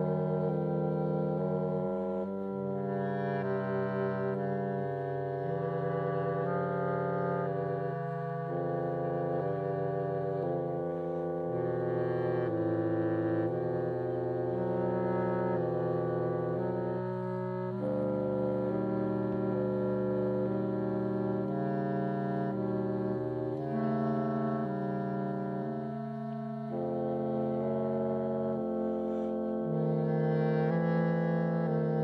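Orchestral film-score music: low brass and winds playing slow, sustained chords that shift every second or two, with no percussion.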